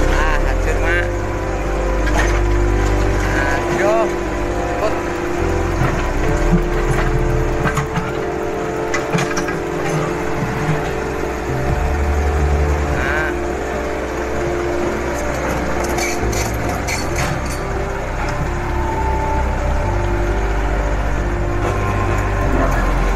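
Hydraulic excavator running as it knocks down a brick house, with sharp crashes of breaking masonry in clusters around the middle and late on, and onlookers' voices.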